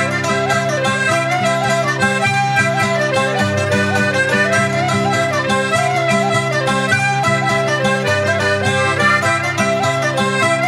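Instrumental folk jig at a lively pace: a melody on a free-reed instrument, with held low notes underneath, over steadily plucked and strummed acoustic guitar.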